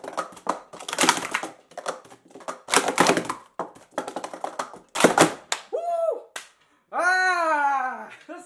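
Plastic sport-stacking cups clattering in a fast run of stacking and unstacking: rapid clicks and clacks for about five seconds. Then a person's voice cries out twice, the second time longer.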